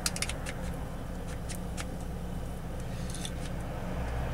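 A lighter being flicked to light a joint: a few short, sharp clicks in small clusters, over a steady low hum.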